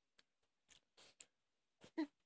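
Faint, scattered soft clicks and short breathy noises from a baby's mouth and breathing as it mouths an adult's finger, with a brief voiced sound right at the end.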